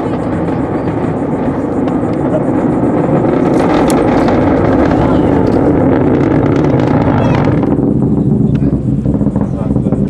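Falcon 9 rocket's nine Merlin engines heard from miles away: a deep rumble with crackle, building over the first few seconds. About three-quarters of the way in the crackle fades, leaving the low rumble.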